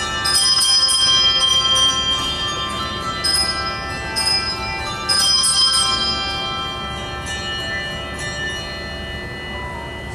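A handbell choir ringing a melody on brass handbells, new notes struck about once a second, each tone ringing on and slowly dying away; the ringing grows quieter toward the end.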